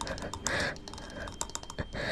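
A person's breathy gasps, mixed with many short, sharp clicks.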